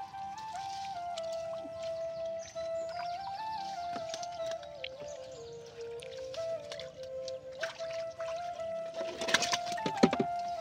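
Background music: a single melody line of held notes moving slowly up and down in small steps, with a brief rustle about nine seconds in.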